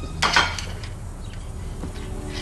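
A brief clatter of dishes, as a plate is set down, about a quarter second in, followed by a quieter stretch with a few faint clinks.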